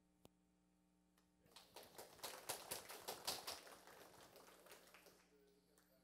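Scattered applause from a small audience, starting about a second and a half in and dying away near the end.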